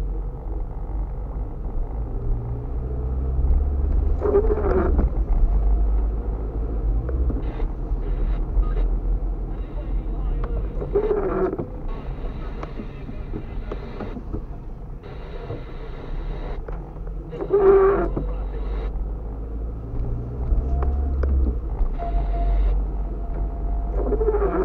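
Windscreen wipers on an intermittent setting sweeping a rain-wet windscreen about every six to seven seconds, four times, each sweep a short rubbing squeak. Under them runs the steady low rumble of the car's engine and tyres on a wet road, heard inside the cabin.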